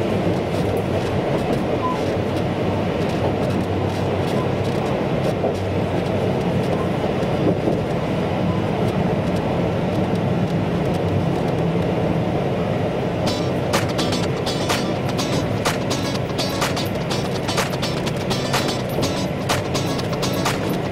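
Ōigawa Railway local train running along the line, heard from inside the car: a steady rumble and motor hum. From about two-thirds of the way through, a run of sharp, irregular clicks and rattles joins in.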